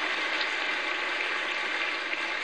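A large indoor crowd applauding steadily, a dense even wash of clapping with no break.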